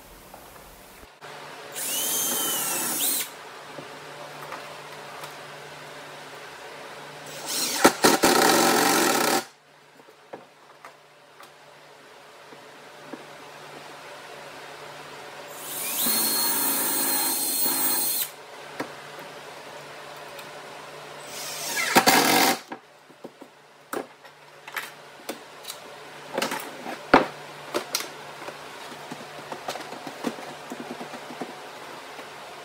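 Cordless drill driving wood screws into pallet-wood slats in four short runs of a second or two each, the motor whining up as each run starts. Scattered light knocks and clicks follow near the end.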